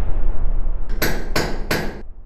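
Sound-logo effect: a low rumble, then three sharp, ringing hammer strikes about a third of a second apart, the first about a second in.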